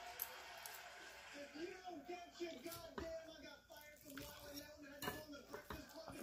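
A metal fork cutting through a stuffed bell pepper on a plate: faint scrapes and a few sharp clicks of the fork against the plate.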